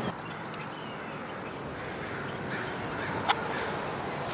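Outdoor ambience: a steady background hiss with faint bird calls, and one short, sharp call about three seconds in.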